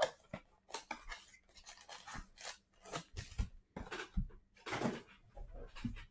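Cardboard blaster box of trading cards being opened and its foil-wrapped packs taken out and laid down: a run of irregular crinkles, rips and light taps.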